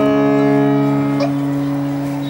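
A man's long, drawn-out parade drill command, held as one steady note that fades slowly.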